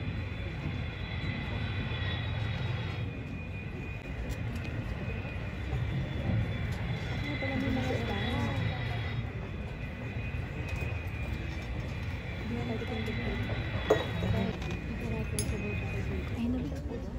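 Steady low rumble with a high whine, like jet airliner cabin noise played over a hall's sound system, under murmuring audience voices. A single sharp click sounds near the end.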